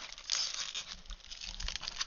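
Plastic craft-supply packaging crinkling and rustling as it is handled, loudest about half a second in.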